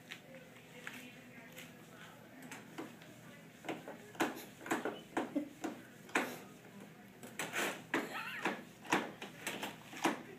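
A cat pushing and pawing at the closed metal wire door of a plastic pet carrier, rattling it in a quick irregular series of clicks and knocks that start about four seconds in and grow busier toward the end.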